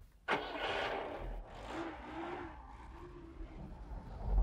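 An old sedan taxi's engine running as the car pulls away, starting abruptly just after the beginning and fading over the next few seconds.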